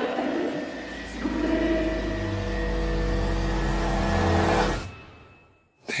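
Film trailer score: sustained low notes over a deep bass rumble that swell and hold, then fade away quickly about five seconds in to near silence, just before a voice starts.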